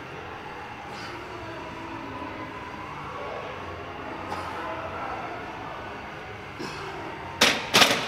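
Loaded barbell racked onto a bench press's steel uprights: two loud metal clanks about half a second apart near the end, over a steady background of gym murmur.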